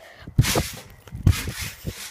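Heavy breaths puffing onto a phone microphone held close to the face, with two stronger puffs about half a second in and about 1.3 s in.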